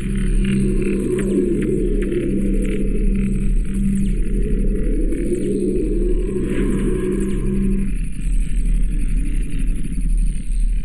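Dense, rumbling sound design for an animated title sting: a steady low rumble with a low pulsing tone stepping on and off over it. The pulse stops about eight seconds in, leaving the rumble.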